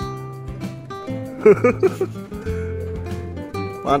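Background music with guitar over a steady bass line. A brief voice cuts in about one and a half seconds in.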